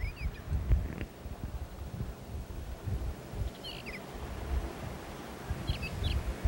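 Low, uneven rumbling and knocks of handling and movement close to the microphone, with a few faint, short bird chirps.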